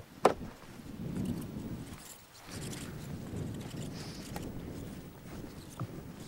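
Wind buffeting the microphone in a strong gusty wind, an uneven low rumble that comes and goes, with one sharp knock just after the start.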